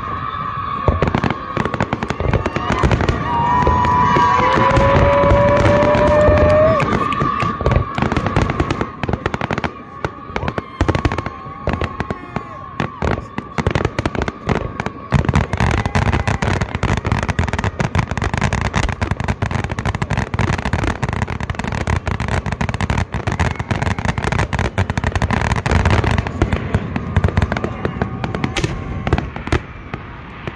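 Fireworks display: a dense, rapid barrage of shell bursts, bangs and crackles, many each second. Whistling tones run through the first half, one gliding upward a few seconds in.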